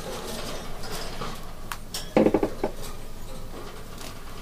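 Light rustling and rattling handling noises with a few sharp clicks, and a short voice sound a little after halfway through.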